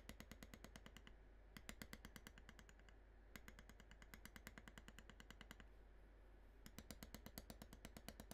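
A leather beveler being tapped with a maul along the tooled lines of vegetable-tanned leather: quick, even light taps, about eight a second, in four runs with short pauses between them.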